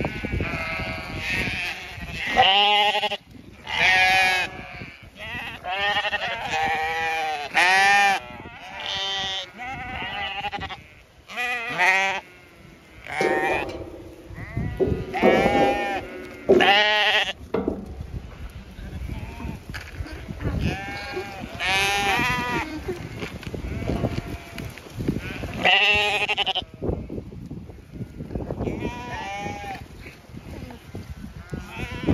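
Zwartbles sheep bleating repeatedly, several voices overlapping, each call quavering in pitch, as the flock crowds round a feed trough expecting to be fed.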